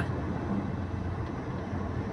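Steady road and engine noise heard from inside a moving car's cabin, its tyres running on freshly paved asphalt.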